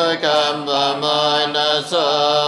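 Buddhist chanting in Pali: voices intoning the text on a nearly level pitch, one syllable after another with hardly a break.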